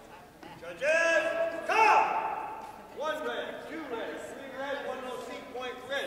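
Two loud, high-pitched shouts, about one and two seconds in, during martial-arts sparring, followed by quieter voices.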